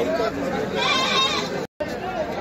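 A single wavering bleat from a sheep or goat about a second in, over constant crowd chatter. All sound drops out briefly near the end.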